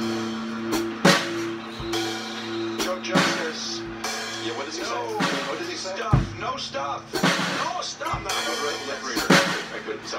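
Electric guitar and drum kit jamming: a held guitar chord rings for the first few seconds, while drum and cymbal hits land about every second or two.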